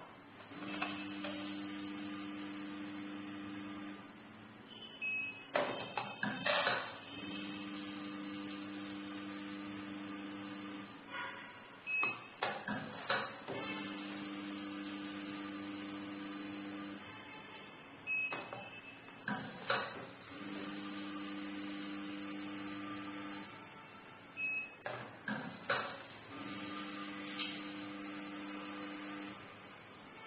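Automatic tea weighing and filling machine running repeated dosing cycles. Its feeder motor hums steadily for about three seconds as the portion is weighed. A short high beep and a clatter follow as the portion of leaves drops out of the chute, and the cycle repeats five times.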